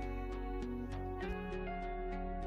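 Soft instrumental background music with a steady pulse of notes, about four a second, over held tones.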